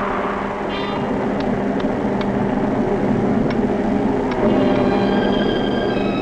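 A steady rush of wind, a storm sound effect, with a few faint sharp clicks. Held musical notes come in about four and a half seconds in.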